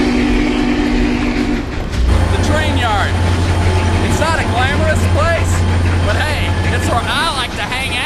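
A train horn sounds a steady chord of several notes and cuts off about a second and a half in. A deep, steady engine rumble then starts and runs on, with unworded shouting over it.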